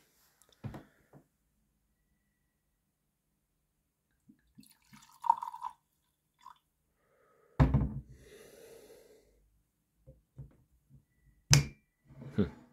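Cognac poured from a bottle into a glass tasting goblet, with a brief glass clink about five seconds in. A heavy knock comes partway through, followed by a second of liquid noise. Near the end there is a sharp knock as the bottle's cork stopper is handled.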